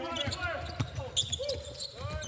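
Basketball dribbled on a hardwood court, with short knocks of the ball and squeaks of sneakers on the floor.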